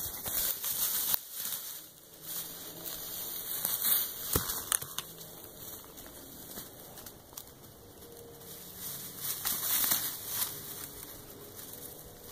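Dry leaf litter, pine needles and twigs crackling and rustling on the forest floor in irregular stretches, loudest about four seconds in and again near ten seconds.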